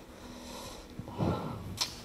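Quiet room tone through a handheld microphone in a pause of a lecture, with a short breath-like sound at the microphone just past a second in, then a single sharp click near the end.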